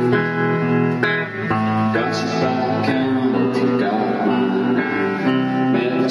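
Live band music led by a guitar, a song played without a break, its sustained chords changing about once a second.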